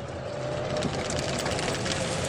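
Golf cart running along, a steady whine over a rumble of running noise.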